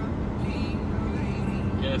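Steady low rumble of road and engine noise inside a car cabin at highway speed.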